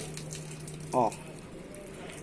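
Water poured from a jug over a succulent's leaves and into its pot, a steady splashing.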